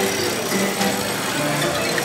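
Venue's themed background soundtrack over loudspeakers: steady held musical tones mixed with machine-like whirring and hum.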